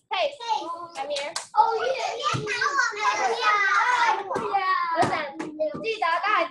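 Children's voices talking and calling out, several overlapping in the middle, with a few short knocks.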